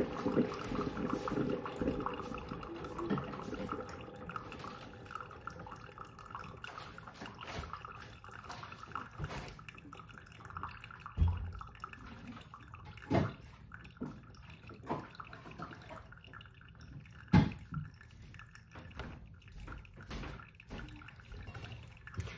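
Coffee maker brewing a small concentrated specialty batch, hot liquid dripping and gurgling, louder at first and easing off. Three sharp knocks come in the second half, the last the loudest.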